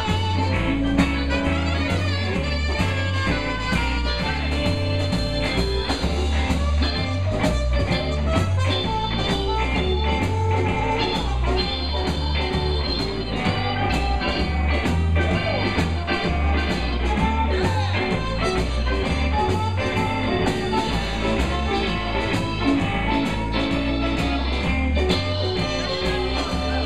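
Live band playing an instrumental passage of a jump blues tune: saxophone and trumpet playing horn lines over electric guitar, drums and a stepping bass line, at a steady lively pace.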